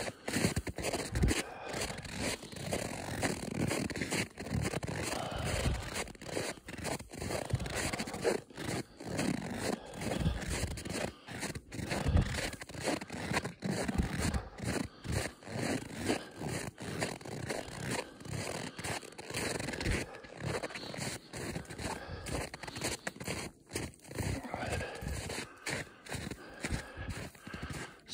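Footsteps crunching on cold, packed snow along a snowmobile trail, a steady walking rhythm of short scraping crunches.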